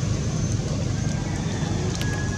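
Steady low rumbling background noise, with a few faint thin high-pitched tones, one of which begins about halfway through.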